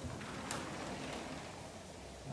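Rustling handling noise from hands working at a wall, starting about a quarter second in and fading after a second and a half, with a sharp click about half a second in and a fainter click a little after a second.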